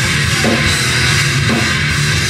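Live rock band playing loud, with electric guitars, bass and a drum kit with cymbals.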